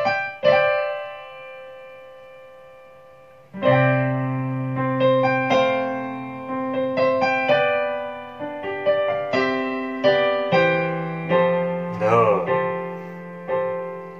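Piano played with both hands. A chord is struck just after the start and rings out as it fades. From about three and a half seconds in comes a flowing stream of chords over changing bass notes with melody notes on top, using suspended (sus2 and sus4) chords within a chord progression.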